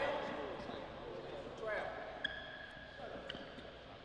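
Basketball game audio: faint voices of onlookers, a few ball bounces and a short sneaker squeak on the hardwood court about two seconds in.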